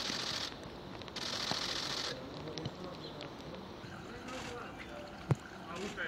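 Faint outdoor ambience with distant voices, two short bursts of hiss in the first two seconds, and one sharp thump about five seconds in.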